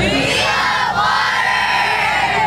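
A large group of children shouting and cheering together, many high voices at once, loud and sustained.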